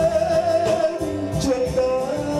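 A man singing into a handheld microphone over backing music, holding a long note and then moving to a lower held note about one and a half seconds in.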